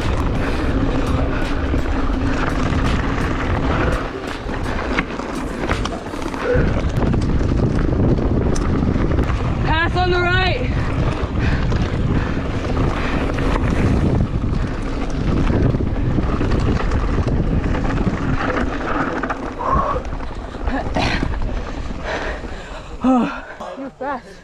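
A 2016 Giant Reign mountain bike ridden fast down a rocky dirt trail. Wind buffets the microphone over the steady rumble and rattle of tyres and frame on loose stones. There is a brief warbling squeal about ten seconds in.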